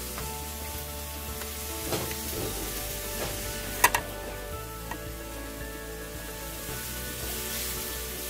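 Steady sizzling hiss of a hot stir-fry pan under soft background music, with a couple of sharp clinks of a serving spoon, the louder one about halfway through.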